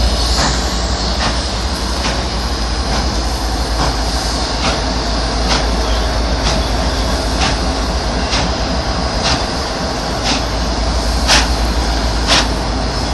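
A train's tender and diesel locomotive rolling slowly past close by. The wheels make a steady rumble on the rails, with a sharp clack about once a second as they cross rail joints, loudest near the end.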